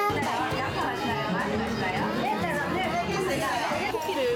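Several voices chattering over one another, with background music underneath.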